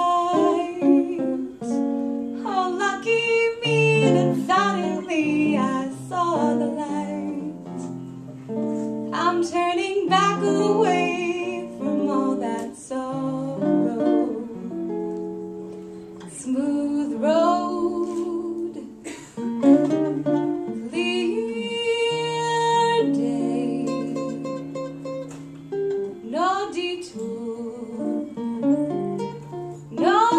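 A jazz ballad played live on guitar, chords and single-note lines plucked, with a woman singing in places.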